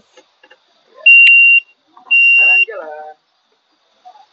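Electric mobility scooter's beeper giving two steady high beeps, each about half a second long and a half-second apart: the warning that the scooter is switched into reverse.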